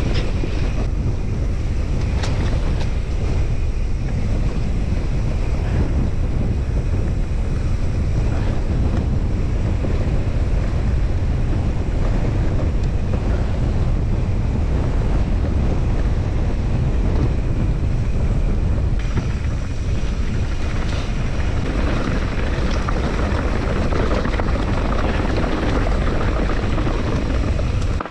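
Wind rushing over an action-camera microphone as a mountain bike descends a grassy hill trail at speed, a steady deep buffeting with the bike's rattle over the rough ground beneath it.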